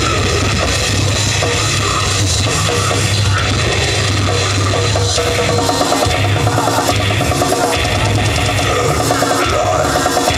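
A brutal death metal band playing live through a large outdoor PA: heavily distorted guitars, bass and drums at full volume, with fast repeated guitar notes from about halfway through.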